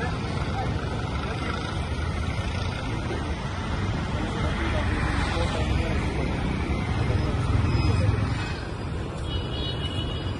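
Roadside town traffic: motor vehicles passing steadily, one growing louder and going by late in the stretch, with people talking indistinctly nearby.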